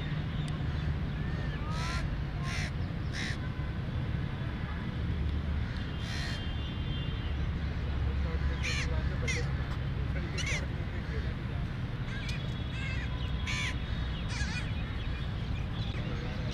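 Crows cawing several times at irregular intervals, with fainter bird chirps in between, over a steady low rumble.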